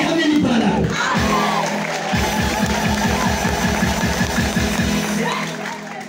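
Church congregation voices and music with a fast, steady beat of about six strokes a second, fading near the end.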